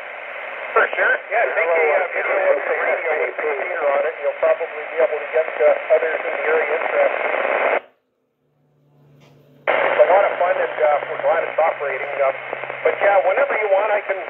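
A distant station's voice comes in over a 10-metre FM repeater through the speaker of a Kenwood TS-480HX transceiver, sounding narrow and tinny. It cuts off abruptly about eight seconds in, and after roughly two seconds of silence with a low hum, the received voice comes back.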